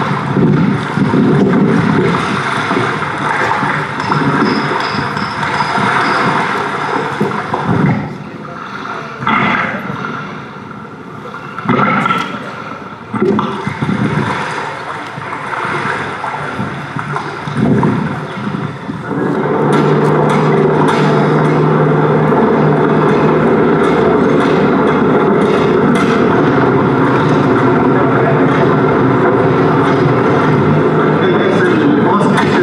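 A documentary's soundtrack heard through a hall's loudspeakers: wind and water at a lakeshore, uneven and gusty. About two-thirds of the way in, it gives way to the steady noise of a car driving on a dirt road.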